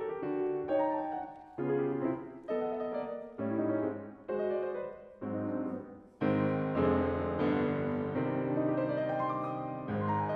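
Concert grand piano played solo: a run of short phrases, each struck and left to fade, then from about six seconds in a fuller, louder passage of held chords.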